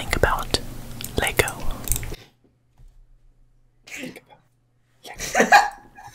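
A person whispering close to a microphone, ASMR-style, with several sharp clicks in the first two seconds, then a pause and more whispering near the end.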